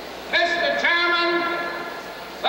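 Brass band striking up in loud held chords: the first enters about a third of a second in, a fresh chord follows about half a second later and is held.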